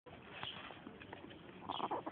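Faint outdoor background, then a short high-pitched vocal call near the end.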